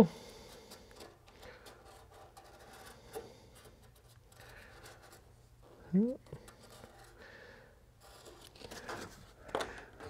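Faint scratching and rubbing of a marker tracing around a hole in a template held against a floor pan, with a short spoken word in the middle.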